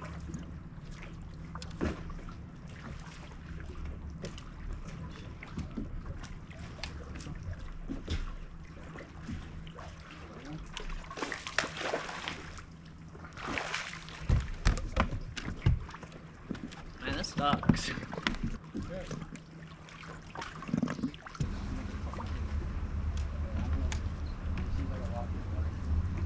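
A jig skipped across the water, splashing as it skips and lands, about halfway through. A steady low hum runs beneath it in the first half, and a few sharp knocks follow the splash.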